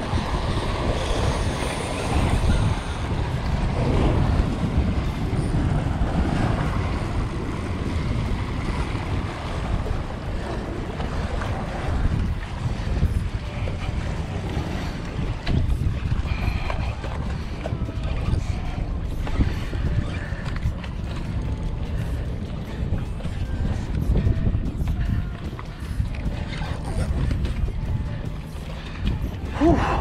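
Wind buffeting the camera microphone in a steady low rumble, with surf washing against the jetty rocks.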